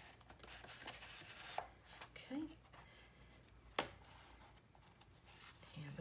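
Cardstock photo mats and album pages being handled and turned: faint rustling and sliding of paper, with a sharp tap about four seconds in.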